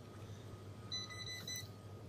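A short electronic beep from shop counter equipment about a second in: one steady tone with a brief break near its end, over a low background hum.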